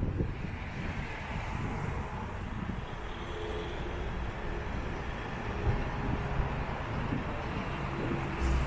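Street ambience with road traffic: a steady rumble of vehicles on the road, with the tyre and engine noise of a passing car swelling through the middle.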